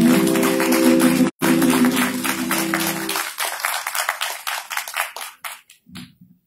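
The final held note of a Kannada light-music song, voice and accompaniment, sounds over audience applause. The music stops about three seconds in and the clapping dies away near the end.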